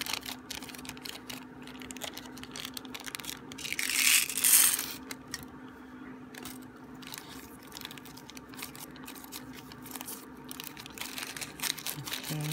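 Clear plastic bead bag crinkling and rustling as it is handled and folded, with many small crackles and a louder rustle about four seconds in.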